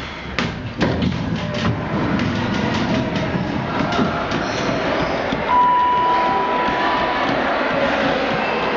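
Clicks of elevator car buttons being pressed, then the steady running noise of a Dover hydraulic elevator. A single steady high tone sounds for about a second and a half a little past the middle.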